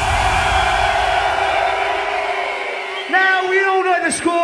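Hardcore dance music breaking down, with the bass and a wash of sound fading under a low held tone. From about three seconds in, an MC shouts long, drawn-out calls through the venue PA.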